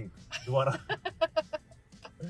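A man laughing: a short voiced sound, then a quick run of six or seven short 'ha' pulses about a second in.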